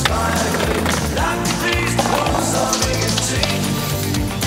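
Skateboard wheels rolling on paving, with sharp clacks of the board, mixed with a music track.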